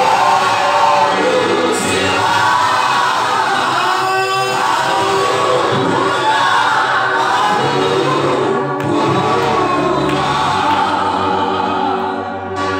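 A group of voices singing a gospel song together, with a low steady tone joining them in the second half.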